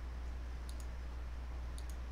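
Computer mouse clicks in quick pairs, one pair about two-thirds of a second in and another near the end, over a steady low hum.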